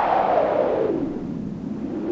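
A whoosh sound effect: a band of noise that sweeps down in pitch, then begins to rise again near the end.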